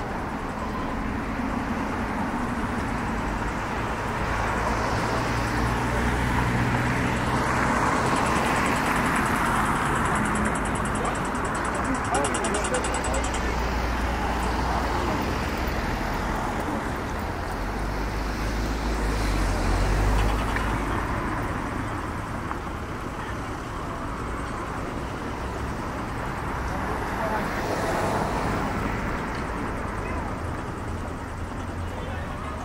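City street traffic: cars passing one after another with tyre noise on a wet road, swelling loudest about a third of the way in and again around two-thirds through.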